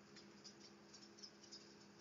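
Faint, irregular soft clicks of a deck of oracle cards being shuffled by hand over a low steady hum; otherwise near silence.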